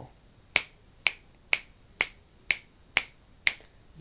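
A person snapping their fingers seven times in a steady beat, about two snaps a second, keeping time as a count-in to an unaccompanied song.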